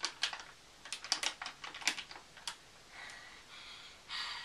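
Drinking from a drink can: a run of light, irregular clicks and taps, then a soft breathy rush of air from about three seconds in.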